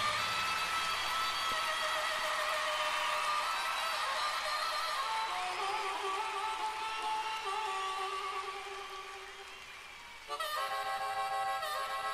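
Solo harmonica playing the intro to a live rock song: long held notes that fade away about ten seconds in, then a louder harmonica phrase comes in.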